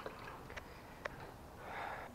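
Quiet room with a few faint small clicks, then a soft breathy rush of noise near the end.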